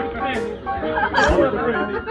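People chatting over music playing in the background.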